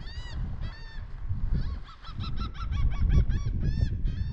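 A bird calling over and over: short, arched calls with many overtones, about two a second, with a quicker chattering run of shorter notes in the middle. A low rumble runs underneath.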